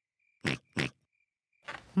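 Two short snorts from a cartoon piglet, about a third of a second apart.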